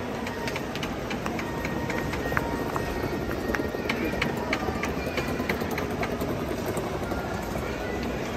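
Indoor market hall ambience: a steady hubbub with voices and scattered short clinks and clicks.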